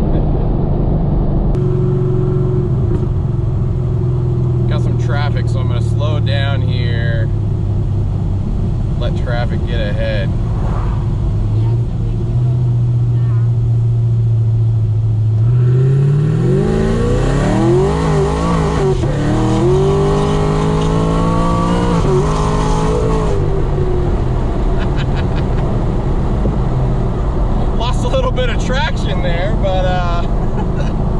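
Camaro SS V8 heard from inside the cabin, running steadily at a cruise, then pulled hard at full throttle about halfway through. The engine revs climb, dip briefly at an upshift, climb again, then drop as the throttle is lifted and it settles back to a steady drone.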